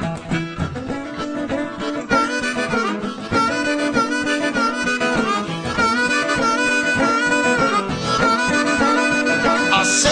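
Blues harmonica solo over electric guitar accompaniment: the harmonica plays long held notes that waver in pitch, over rhythmic guitar chords.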